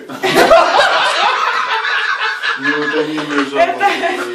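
Men laughing hard in loud, rapid bursts that start just after the beginning and ease off about two and a half seconds in, followed by a man's drawn-out voice.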